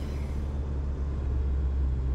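Inside a moving car: a steady low rumble of engine and road noise as the car drives along a winding hill road.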